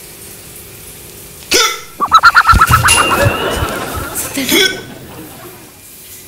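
A man hiccuping, an affliction he cannot get rid of: a sharp hic about a second and a half in, then a rapid, juddering vocal sound, and another hic near the end.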